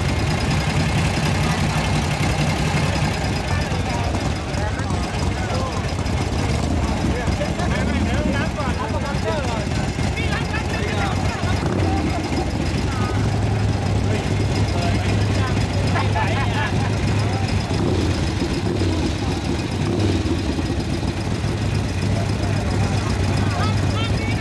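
Vintage motorcycle engines idling steadily at the start line, with people talking over them.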